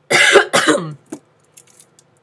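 A woman coughs twice in quick succession, loud and close to the microphone, followed by a few faint clicks.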